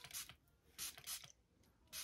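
A hand-pump spray bottle misting product onto hair: about five short spray bursts in quick succession, roughly two a second, each a quick hiss with the pump's click.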